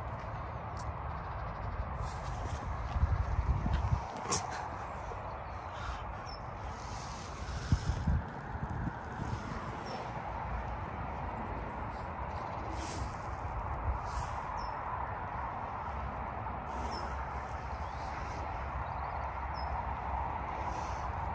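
Outdoor ambience: an irregular low rumble of wind on the microphone over a steady background hum, with louder gusts about three and eight seconds in and a few faint, short high chirps.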